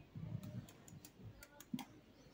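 Faint, irregular light clicks and soft knocks, about half a dozen, from small makeup items being handled.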